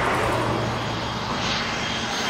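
Steady airliner engine noise: an even rush with a low hum underneath.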